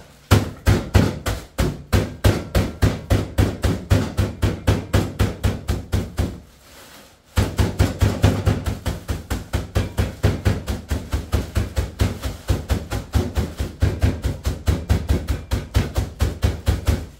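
A fist pounding biscuits in a plastic bag on a kitchen counter to crush them into small pieces: rapid thuds, about five a second, with a pause of about a second some six seconds in.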